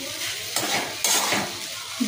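Steel spatula stirring and scraping foxtail millet and moong dal around a steel wok as they fry in a little oil, with a light sizzle and a couple of sharper scrapes against the pan.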